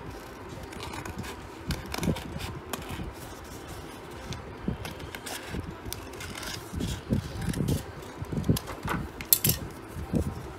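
Metal scissors snipping through a sheet of notebook paper with irregular short cuts and paper rustling. The cuts come thicker in the last few seconds, over a steady background hiss.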